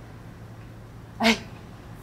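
A woman's short exclamation, "ê", about a second in, over a faint steady low room hum.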